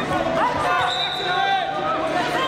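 Wrestling shoes squeaking on the mat as two wrestlers scramble and shift their feet, a string of short, rapid squeaks over the hum of voices in the hall.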